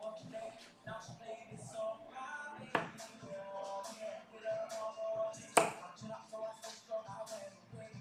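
Two darts hitting a bristle dartboard, each a single sharp knock, about three seconds apart, over faint background music.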